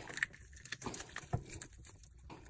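Fingers tearing the gills out of a raw milkfish: faint wet squelching with a few short, sharp clicks spread through the moment.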